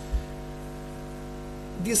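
Steady electrical mains hum with a stack of even overtones, with one short low thump just after the start; a man's voice begins near the end.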